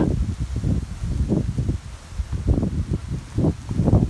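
Gusty wind buffeting the microphone in low, uneven rumbles, with leaves rustling.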